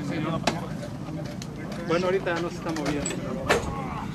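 Quiet speech, a man and a girl talking, over a steady low rumble, with a sharp click about half a second in and another near the end.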